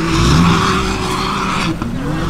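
Large pickup truck's engine running close by, with a steady hiss over the low drone.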